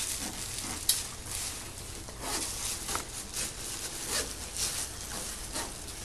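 A clear plastic bag crinkling and rustling as it is tucked into a wheelchair backrest's fabric cover while the cover's zipper is pulled partly closed. It is an irregular soft crackling, with one sharp click about a second in.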